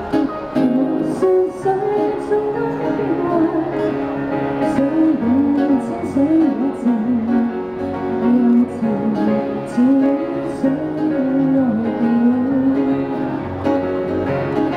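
A woman singing a Cantonese pop ballad through a handheld microphone, the melody held and sliding between notes, over acoustic guitar accompaniment.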